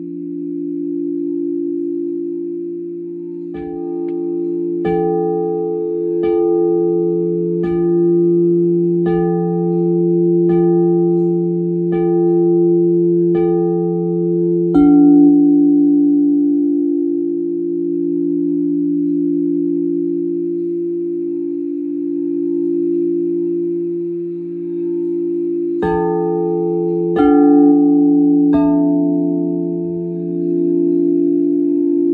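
Crystal singing bowls tuned to 432 Hz, sounding as a steady, layered drone of several low tones. Over it come bell-like struck notes about every second and a half, nine in all from a few seconds in until about halfway, then three more near the end.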